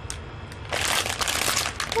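Plastic instant-noodle packet crinkling as it is handled in the hands, starting about two-thirds of a second in.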